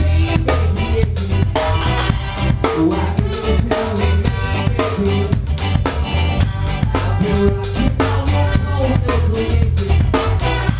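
Live ska band playing, with the drum kit close and loud: snare and bass drum driving a steady beat under guitars, bass and horns.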